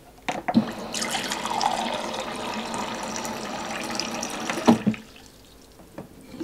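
Countertop water dispenser running a steady stream of water into a drinking glass for about four seconds. There are short glass knocks as the glass is set on the drip tray at the start, and a louder knock as it is lifted away when the flow stops.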